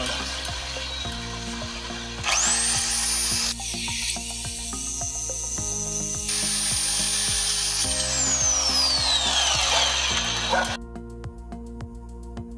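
Reciprocating saw cutting through rusted screws on a steel flue pipe, its motor whine rising sharply about two seconds in, running hard, then falling away in a long downward whine before stopping near the end. Background music plays throughout.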